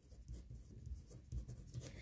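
Pen writing on paper: faint scratching as a word is written out in joined-up letters.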